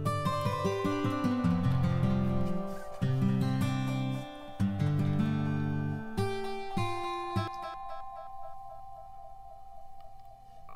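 A guitar part playing back through an OhmBoyz delay plugin with the delay's filter resonance turned up. After about seven seconds the playing stops and a resonant delay tail rings on, its echoes repeating and fading.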